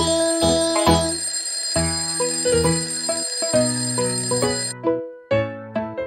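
Alarm clock bell ringing over instrumental children's music, cutting off suddenly about three-quarters of the way through, after which the music carries on.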